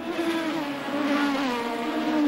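Formula One car engine running, a sustained high engine note that sinks slowly in pitch.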